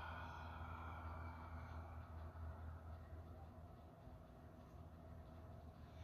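A slow, faint exhale through the mouth after a held breath, letting the air out and fading away over the first few seconds, over a low steady hum.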